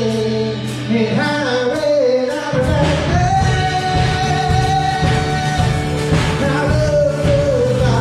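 Live worship song: a man sings lead with strummed acoustic guitar and band accompaniment, holding one long note from about three seconds in.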